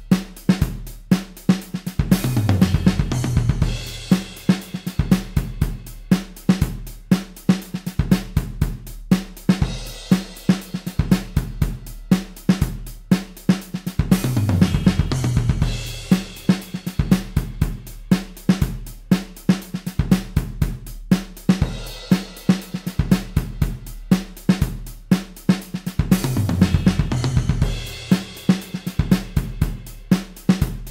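Programmed fusion jazz drum loop in 3/4 at 120 bpm, played on a sampled Superior Drummer kit: kick, snare, hi-hat and cymbals in a steady pattern. About every 12 seconds comes a louder, busier fill of drums stepping down in pitch under a cymbal wash.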